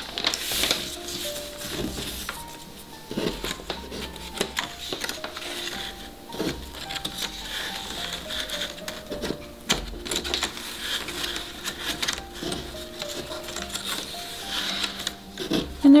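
Soft background music with slow, held notes that change pitch every second or so. Light, scattered rustles and taps of paper strips being slid and woven on a tabletop sound over it.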